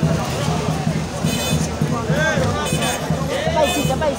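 Rally crowd noise: music playing under loud, overlapping raised voices.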